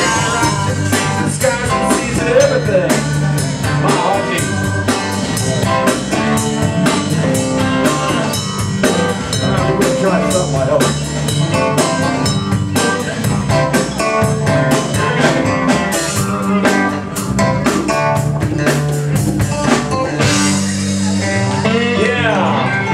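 Live band playing an instrumental passage: electric guitars over a steady drum beat and bass.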